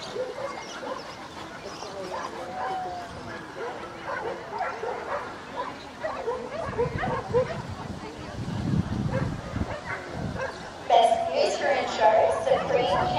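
Dogs barking and yipping in short scattered calls, with people talking; the voices get louder near the end.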